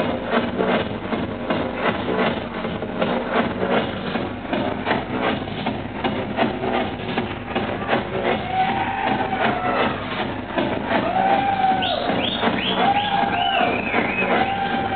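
Techno DJ set played loud over a club sound system, a steady four-on-the-floor kick at about two beats a second. About eight seconds in, a synth figure with swooping pitch bends joins and repeats roughly once a second.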